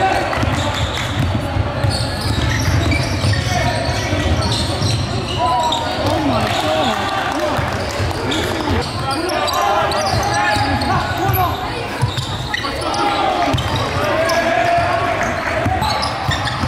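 Live basketball game sound in a large hall: a ball bouncing on a hardwood court among scattered calls from players and spectators.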